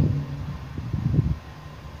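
A pause in the talk filled by a low steady background hum and noise that fades over the two seconds, with a few faint short low sounds about a second in.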